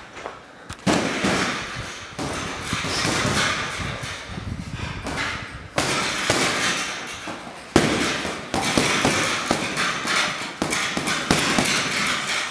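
Gloved punches thudding into a heavy punching bag, several sharp hits among many lighter knocks, over a dense noisy background.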